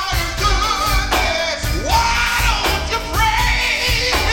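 Live gospel quartet singing: a male lead voice sings through a microphone over backing voices and a band with drums, his voice sliding upward in a long cry about two seconds in.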